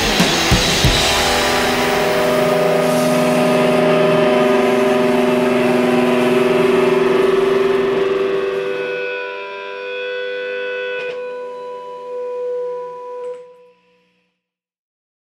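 A rock band's final chord. The last drum hits come in the first second, then a distorted electric guitar chord rings out and slowly fades after about eight seconds. A few thin sustained guitar tones are left, and they cut off suddenly just before the end.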